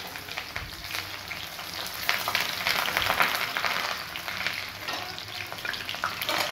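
Chopped onions sizzling in hot oil in an aluminium kadhai, a steady frying hiss with many small pops.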